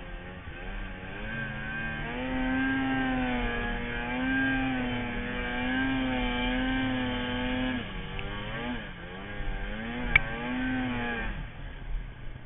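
Snowmobile engine running hard under load in deep snow, its pitch holding high and dipping again and again as the throttle is worked, dropping away about eight seconds in, picking up briefly, then falling off near the end. A single sharp click about ten seconds in.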